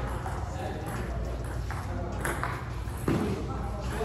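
Voices talking in a large hall, with a few light, sharp taps of a table tennis ball between points. The loudest is a single knock about three seconds in.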